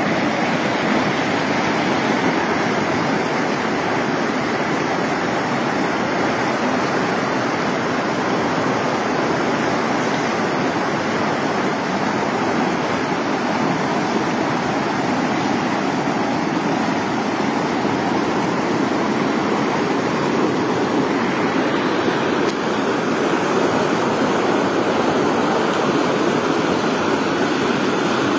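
The Swat River rushing past in fast, turbulent whitewater: a loud, steady, unbroken wash of water noise.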